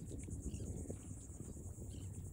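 A steady chorus of insects in the marsh, a high-pitched rapid pulsing, over a faint low rumble.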